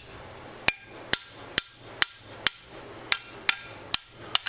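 Hammer blows on a seized Mazda 626 rear brake caliper: about eight sharp metallic strikes, roughly two a second, each with a short ring. They are struck to free a caliper stuck at its rusted guide pin.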